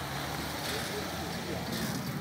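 Steady outdoor background noise with faint voices in it.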